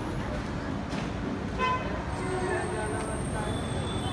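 A short horn toot about one and a half seconds in, over a constant busy outdoor background; thin high steady tones come in about halfway and carry on.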